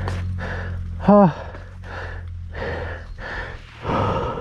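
A person breathing hard in quick, regular breaths, with a short voiced grunt about a second in. A motorcycle engine idles low underneath and fades out near the end.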